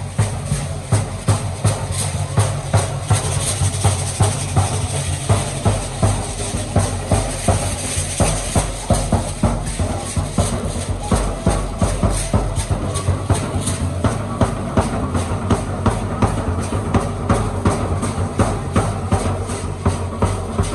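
Live danza music: a violin playing over a large drum beating steadily about twice a second, with the dancers' hand rattles shaking and their feet stamping in time.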